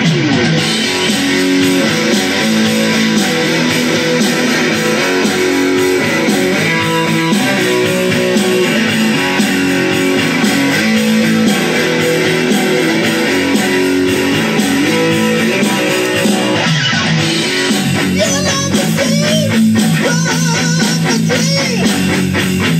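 Electric guitar playing an instrumental melody of sustained notes, with the notes wavering and bending in pitch over the last few seconds.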